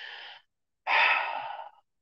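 A person's breath close to the microphone: a breath in, then a louder, longer breath out like a sigh starting about a second in and fading.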